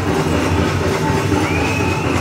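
Powwow drum group's steady drumbeat with singing, and dancers' bells jingling.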